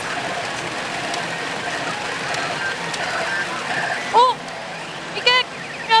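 Pachinko parlor din: a steady, rain-like rush of pachinko balls and machine sound effects from a pachinko machine in mid-payout. Two short vocal sounds come near the end.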